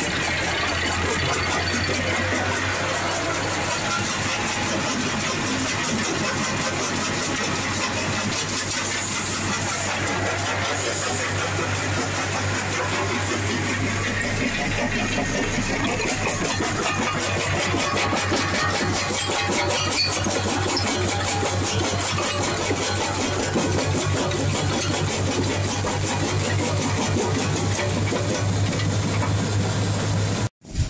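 Portable jaw crusher plant running steadily: its Perkins diesel engine gives a constant low hum under dense mechanical noise from the crusher and conveyor.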